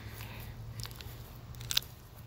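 Teeth biting into the green husk of an unripe Manchurian walnut: a few short crunching clicks, the sharpest near the end.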